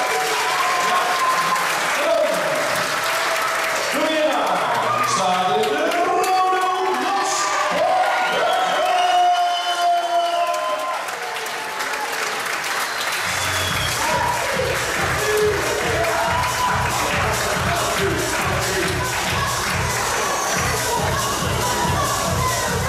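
Music played over the hall's PA, with a melody and a singing voice over applause and crowd chatter; about two-thirds of the way through, a steady bass beat comes in.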